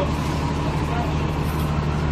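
A bus engine idling steadily at the curb, a low, even hum, with faint voices of bystanders over it.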